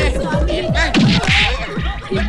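Comic film-score music with a steady pulsing beat, laid over a slapstick scuffle. A sudden swish or whack sound effect cuts in about a second and a quarter in.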